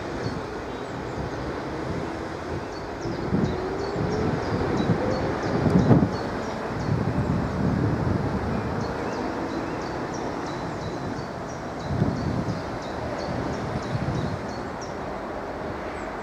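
Wind buffeting the microphone in gusts, with the strongest swells about six and twelve seconds in, over birds chirping throughout.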